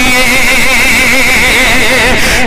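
A man singing a naat into a microphone, holding one long note with a wavering vibrato, unaccompanied by instruments.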